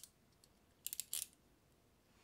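A quick cluster of sharp clicks about a second in, from handling a snap-off utility knife.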